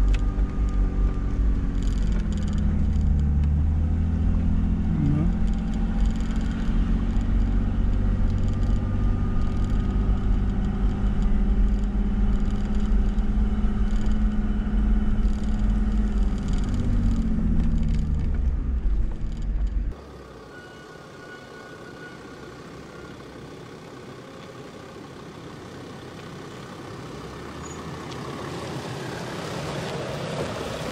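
Mercedes G-Class engine running as the vehicle drives along a sandy track, with heavy wind rumble on a bonnet-mounted camera. The engine note rises a couple of seconds in, holds steady, and falls away near the end of the loud part. About two-thirds of the way through, the sound cuts abruptly to a much quieter, distant vehicle sound.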